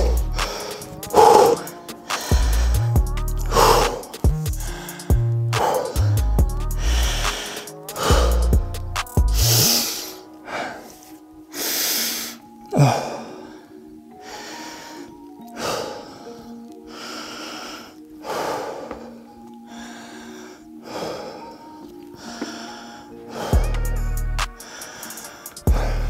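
Background music with a heavy beat that drops out about halfway, over heavy gasping breaths, roughly one every two seconds, from a man exhausted from squatting to muscle failure on a pendulum squat machine.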